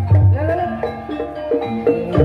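Live Javanese gamelan music for a reog/ebeg dance: struck metal keyed percussion plays a stepping melody. The deep drum beats fade out in the second half and come back just at the end.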